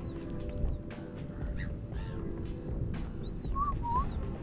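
Gulls calling: a few short, high, arched cries, with a lower call near the end, over steady background music.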